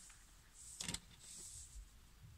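Faint handling sounds of a ribbon loop being pressed into a foam ball: a soft click a little under a second in, then a brief light rustle.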